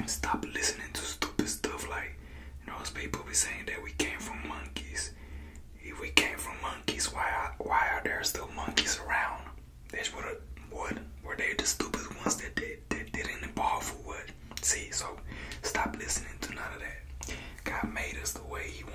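A man whispering close to the microphone throughout, over a steady low hum.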